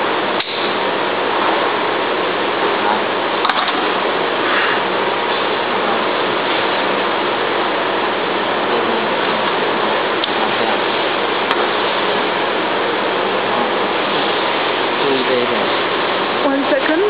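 Steady, even hiss of background noise, with a sharp click about half a second in and a fainter one a few seconds later.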